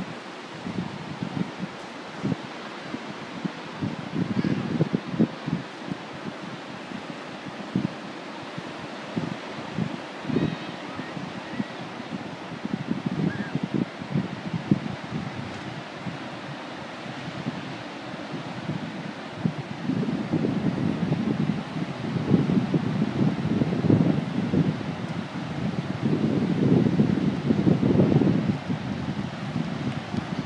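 Wind buffeting the microphone in irregular gusts, growing stronger and more continuous in the last third, over a steady hiss of surf.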